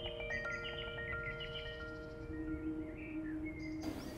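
Soft instrumental background music: a low chord held and slowly fading, with a few light, bell-like high notes picked out above it. A new low note comes in about halfway through.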